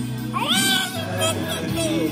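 A baby's short high-pitched squeal, rising and then falling, about half a second in, and a shorter one near the end, over background music.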